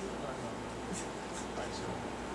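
A pause in a talk in a quiet hall: a faint voice heard off-microphone, with a few light rustles.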